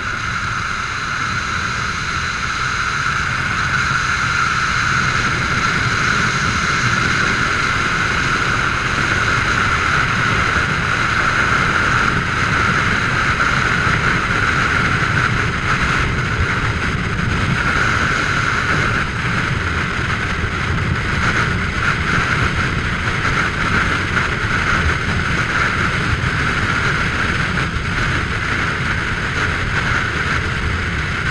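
Steady rush of freefall wind buffeting a helmet-mounted camera, growing louder over the first few seconds as the fall speeds up, then holding level.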